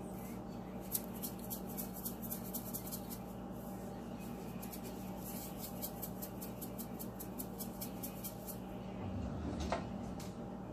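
Salt shaker shaken over a pot of water, a rapid run of faint ticks of salt rattling and falling that stops shortly before a single louder knock near the end.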